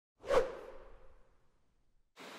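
A single whoosh sound effect, sweeping in about a quarter second in and fading away over about a second.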